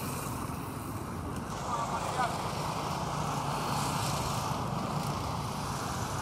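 Steady hum of city traffic, with a faint voice briefly about two seconds in.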